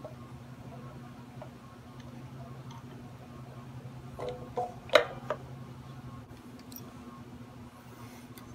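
Hands handling an electric guitar's loaded pickguard and its wiring, making faint scattered clicks, with one sharper click about five seconds in, over a steady low hum.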